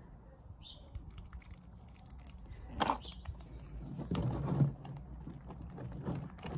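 Hot water poured from a kettle onto a pump's rubber outlet hose, with small handling clicks throughout and a few faint bird chirps.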